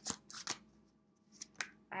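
A tarot deck being shuffled by hand: a few crisp card clicks early on and two more about a second and a half in, with a quiet pause between.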